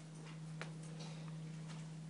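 Quiet room tone: a steady low hum with a couple of faint ticks partway through.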